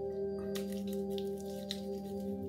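A steady ringing drone of several held tones, like a singing bowl, under soft crackling as shaving soap lather is rubbed over the stubble by hand.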